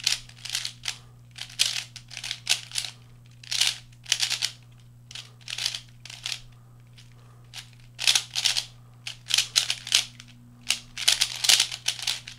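Gans III version 2 3x3 plastic speedcube being turned fast during a solve: quick runs of clicking and clacking from the layer turns, in irregular bursts with short pauses between them. The turns run smoothly without lockups.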